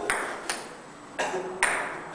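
Celluloid ping pong ball clicking in a rally on a table-tennis table, struck back and forth with wallets instead of paddles. Three sharp clicks come about half a second, a second and a quarter, and a second and a half in.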